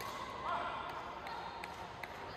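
Faint sound of a badminton rally on an indoor court: a few light taps and short squeaks over the hall's background hum.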